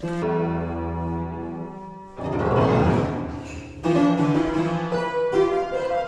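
Old, weathered upright piano being played: a held chord for about two seconds, a rush of noise without clear notes, then more notes and chords from about four seconds in.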